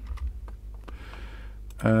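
Computer keyboard keys clicking a few separate times as a value is typed in, over a faint low hum.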